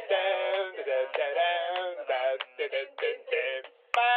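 A high-pitched, synthetic-sounding singing voice with no bass, in short sung phrases broken by brief gaps: a sung show jingle.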